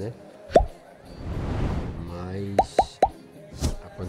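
Four short, sharp pops, the loudest sounds here: one about half a second in and three in quick succession near three seconds, like an inserted sound effect. Under them runs distant live music with singing from a festival stage.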